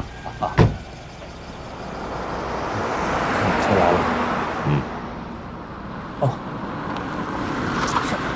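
A car door shuts just after the start. Then a Mercedes sedan drives off, its engine and tyre noise swelling to a peak about three to four seconds in and fading, before growing again near the end.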